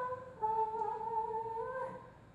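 A woman singing into a microphone, holding two long notes: a brief one at the start, then a slightly lower one from about half a second in that rises a little near the end.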